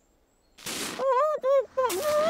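A short burst of noise about half a second in. Then a cartoon character's wordless voice goes up and down in quick repeated syllables, like laughter.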